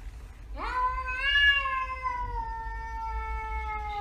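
A cat giving one long, drawn-out meow that sweeps up quickly, then holds and slowly falls in pitch for about three and a half seconds.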